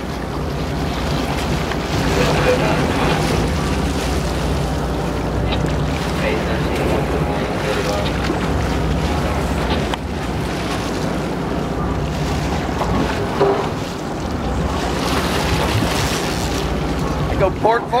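Sportfishing boat's engines running steadily at low speed, a constant low hum under the rush of wind on the microphone and water along the hull.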